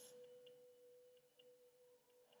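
Near silence: room tone with a faint steady hum and a brief soft hiss at the start.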